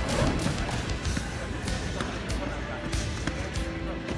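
Scattered thuds and voices from a karate bout, with music underneath.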